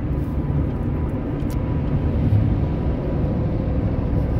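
Steady drone of engine and road noise heard from inside a vehicle's cabin while cruising at highway speed.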